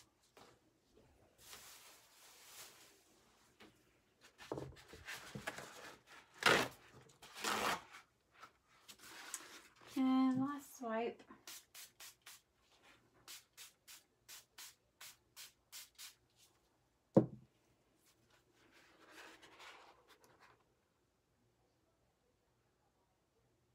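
Paper towels rustling and rubbing, then a small trigger spray bottle squirting a quick run of about fourteen sprays, about three a second, to dampen a paper towel. A single sharp knock follows, the loudest sound, then more paper-towel rustling.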